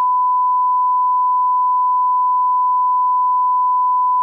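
Line-up test tone played with broadcast colour bars: a single pure tone, held perfectly steady.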